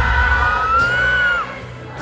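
Live pop-rock band playing loudly at a concert, heavy on bass and drums, with the audience cheering. Over it, one long high whoop from the crowd is held for about a second and a half and falls away at its end. The music then drops quieter briefly before a loud drum hit near the end.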